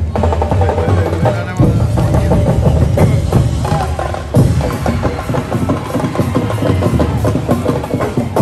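Street-dance festival music: fast, dense drumming with sharp wood-block-like clicks and a melody line over it, with a heavy accented hit about four and a half seconds in.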